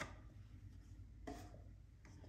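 Near silence, with a faint rub of a cardboard sleeve sliding off a cardboard box a little over a second in.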